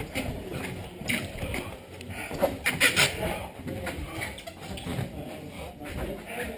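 Two grapplers wrestling on a foam mat: heavy breathing and grunting with bodies scuffing and shifting on the mat, loudest about three seconds in.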